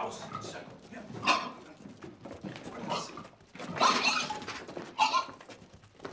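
A domestic pig squealing and grunting in about four loud bursts, the longest a little past the middle, as it is chased and grabbed.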